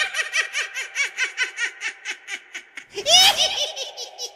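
Witch's cackle sound effect: a rapid, even run of 'ha' pulses, about six a second, fading away over about three seconds, then a louder, high-pitched cackle near the end.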